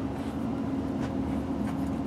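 A steady mechanical hum with a constant mid-low tone over a low rumble.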